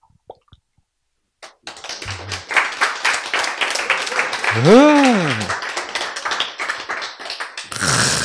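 A room of listeners responding with a spread of clapping and voices, starting about a second and a half in after a near-silent pause; around the middle one voice calls out in a long exclamation that rises and then falls in pitch.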